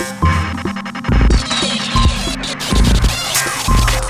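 Live electronic music from a Eurorack modular synthesizer rig: deep bass pulses about every 0.8 s under dense glitchy clicks and short high blips, with a burst of hiss about a second and a half in.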